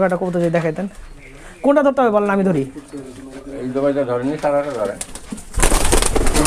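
A pigeon beating its wings hard in a loud, rapid flurry, starting near the end, as it is snatched by hand from its cage.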